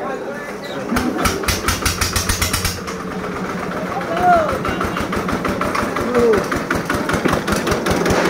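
Butcher's cleaver chopping rapidly on beef against a wooden log block: a fast, even run of knocks from about a second in, harder at first, then lighter and quicker.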